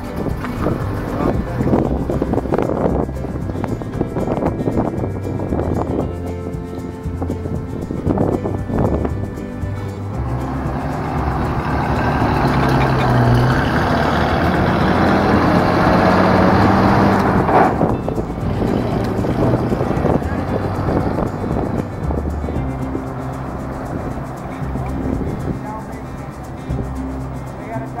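1946 Dodge fire engine's engine running as the truck drives off. About ten seconds in it grows louder, with its pitch rising slightly, and the sound drops off suddenly a little past halfway.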